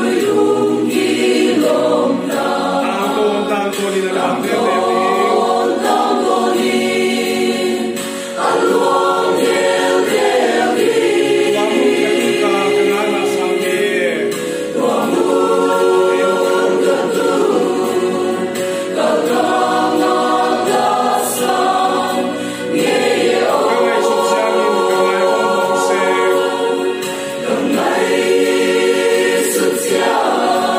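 Mixed choir of men and women singing a gospel song in several voices, in phrases of a few seconds each with brief breaths between them.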